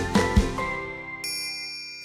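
The last drum hits of a short music cue give way to a held chord that fades; about a second in, a bright, shimmering ding rings out and holds, a sparkle sound effect.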